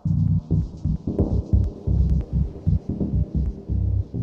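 Background electronic music with a heavy pulsing bass beat and light high ticks.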